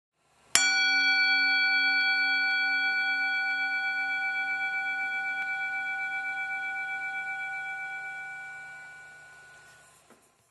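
A single struck bell about half a second in, ringing with several overtones and a slow wavering pulse, then fading away over about nine seconds.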